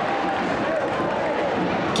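Steady stadium ambience from a football match broadcast, with faint distant voices in it.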